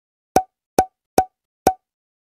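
Four short, identical percussive hits, evenly spaced a little over two a second, each with a brief ringing note, as an added sound effect or beat in an edited intro.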